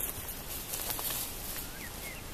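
Tall meadow grass and clothing rustling as a person steps through the grass and crouches down, over a steady outdoor background. A couple of faint bird chirps come near the end.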